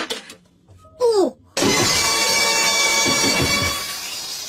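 A short falling swoop about a second in, then a loud, sustained shattering crash with ringing tones, mixed with music.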